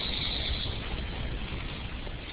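Steady background hiss with a low rumble on the webinar's audio line, in a pause between speakers.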